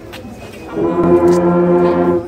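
Marching band brass section (sousaphones, trombones and trumpets) comes in with a loud, held chord about two-thirds of a second in, after a moment of quiet murmur.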